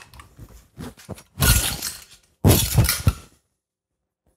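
Stainless steel potato ricer clanking and rattling as it is handled and its hinged handles worked, in two short bursts of sharp metallic clatter. The sound cuts off suddenly near the end.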